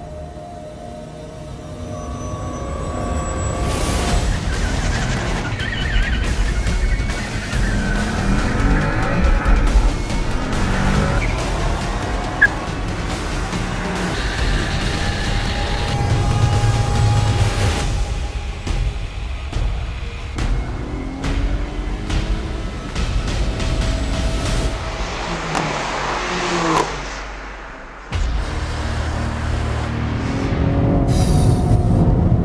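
Sport sedan engines accelerating hard in a drag race, rising in pitch and shifting up several times, mixed with a loud music soundtrack.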